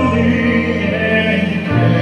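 A slow song with voices holding long sung notes over accompaniment, with a shift in the bass notes near the end.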